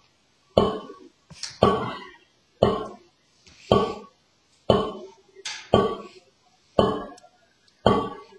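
Snare drum struck with wooden sticks in slow, even single free strokes, about one a second. Heard over a video call, the sound drops to silence between strokes.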